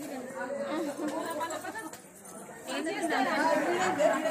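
Crowd chatter: several people talking at once, their voices overlapping, with a brief lull about halfway and louder talk after it.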